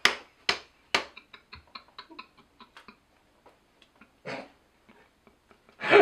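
A series of sharp taps, about two a second at first, then quicker and fainter, dying away within about three seconds. A short burst of noise follows about four seconds in, and a louder one comes just before the end.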